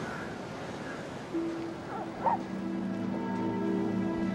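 Quiet dramatic TV score fading in about a second in: held notes that layer into a sustained chord, with a brief voice sound just after two seconds.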